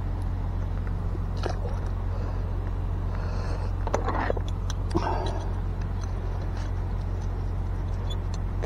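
A steady low rumble, with a few soft clicks and rustles of fingers handling a fishing hook and line.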